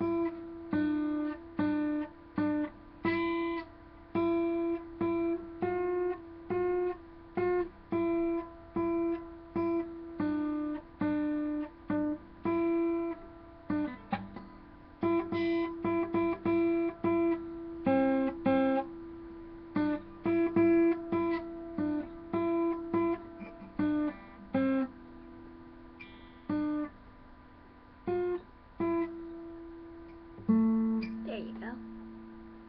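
Acoustic guitar played alone: chords struck in a steady rhythm of roughly one to two strokes a second, each left to ring, with the chord shifting every few strokes and a few longer held chords in the second half.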